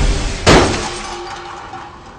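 Explosion sound effect with glass breaking and shattering, a second sharp crash about half a second in, then the debris noise fading away.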